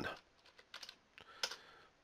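A few faint computer keyboard keystrokes in two short clusters, as a scene number is typed in.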